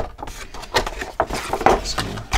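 Cardboard packaging and a clear plastic blister tray being handled: irregular rustling, scraping and light knocks as the box is lifted off the tray.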